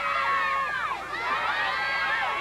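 Many children shouting and cheering at once, their high voices overlapping, with a brief lull about a second in.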